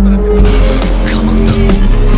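Loud background music with a heavy, steady bass and held notes.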